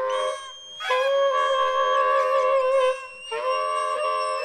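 Soprano saxophone in free improvisation, holding long notes that waver with vibrato in the middle, with two brief breaks between notes, shortly after the start and about three seconds in.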